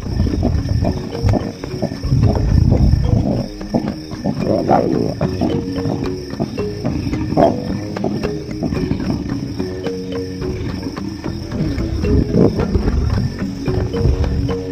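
Lions growling at intervals as they feed and squabble over a carcass, over background music with held notes.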